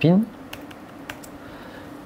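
A few keystrokes on a laptop keyboard as a PIN code is typed in.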